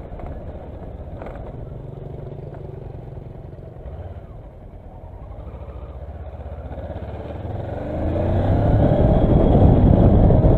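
Kawasaki Versys motorcycle engine running at low speed on the road, pulling harder near the end with a rising pitch and getting louder as it accelerates.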